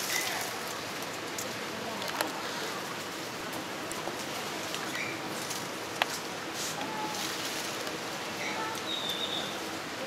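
Outdoor tropical ambience: a steady rustling hiss with two sharp clicks, about two and six seconds in, and short high bird chirps near the end.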